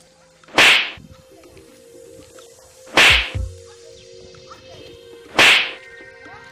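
Three loud, sharp slap strikes with a whip-like crack, evenly spaced about two and a half seconds apart, each followed by a dull low thud.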